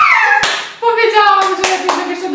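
A woman's voice, held and without clear words, with three sharp hand claps, one about half a second in and two close together near the end.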